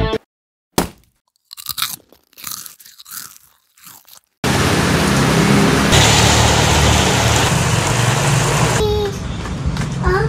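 Rain falling steadily: a dense, even hiss that starts abruptly about four seconds in and stays loud. Before it there are a few short, faint sounds in near silence.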